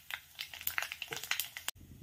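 Mustard and cumin seeds spluttering in hot oil in a kadai: scattered faint pops and crackles. The sound cuts off sharply shortly before the end.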